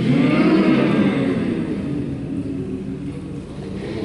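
A group of voices making a loud, low, sustained rumbling vocal sound together, performing a hand-drawn graphic score; it eases off slightly after the first second.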